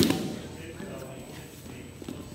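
A man's loud shouted count ends at the very start. Then comes the low, echoing background of a large gym, with faint voices and movement as a group of wrestlers get up to drill.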